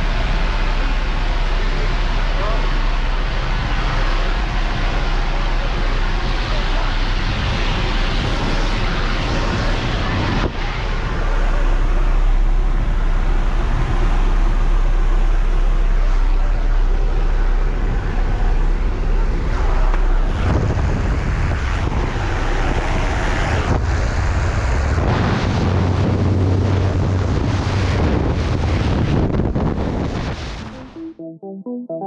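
Inside a skydiving jump plane's cabin: a loud, steady drone of engine and propeller with rushing wind noise. It grows louder about ten seconds in and shifts again about twenty seconds in.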